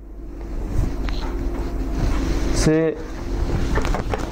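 A steady low machine hum, slowly growing louder. Near the end a whiteboard eraser starts rubbing across the board.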